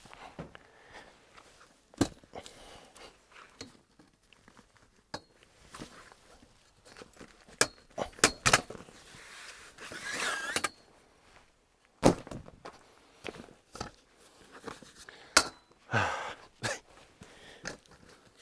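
Tent poles being taken off a tent cot's frame: scattered knocks and clicks as the poles are unclipped and handled. About ten seconds in, a longer rubbing scrape as a pole is drawn across the cot's fabric.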